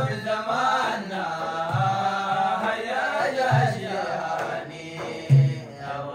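Men singing a Sudanese madih (praise song for the Prophet) in unison, to hand-held frame drums that sound a deep stroke about every two seconds.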